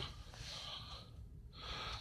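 A man's faint breathing close to the microphone: an airy breath, a short break about a second in, then another, over a low steady hum.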